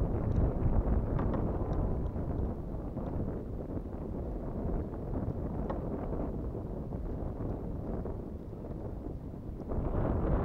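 Steady wind buffeting the microphone as a low rumbling noise, with a few faint clicks.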